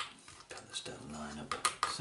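Small metal screws, washers and spacers clicking and clinking as they are handled and fitted by hand, a few sharp clicks at the start and near the end. A brief wordless voice murmur comes in the middle.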